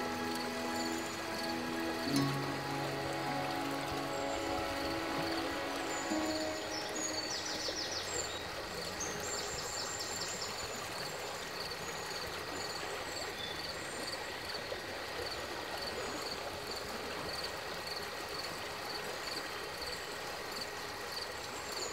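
Soft, sustained music notes that fade away by about eight seconds in, over the steady rush of a flowing stream, with faint high chirps.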